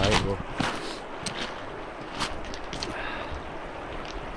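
Shallow, clear river running over a stony bed, a steady rushing hiss, with a few faint clicks of stones underfoot.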